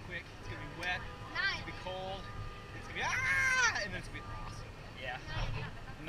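People's voices calling out and exclaiming, without clear words. About three seconds in comes one long, high-pitched shout that rises and falls, the loudest thing here. A steady low rumble runs underneath.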